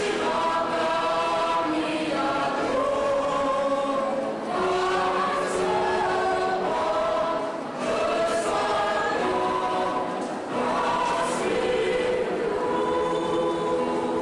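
Mixed choir of men, women and children singing held chords in several voices, with short breaks between phrases about four and a half, eight and ten and a half seconds in.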